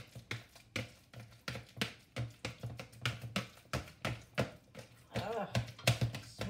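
Ripe bananas being mashed by hand in a plastic bowl, the utensil knocking against the bowl about three times a second.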